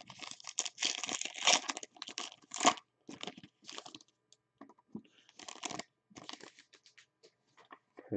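Foil wrapper of a football trading card pack being torn open and crinkled: dense crackling for about the first three seconds, then sparser crinkles and rustles as the cards are drawn out.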